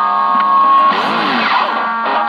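Distorted electric guitar, a Cort X6 played through a Zoom GFX-1 multi-effects pedal (patch A4) and a Laney amp: a loud chord rings out, and about a second in its pitch dips and swoops before new notes are picked near the end.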